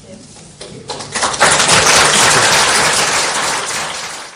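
Audience applauding: a few scattered claps about half a second in, swelling within a second to full, steady applause.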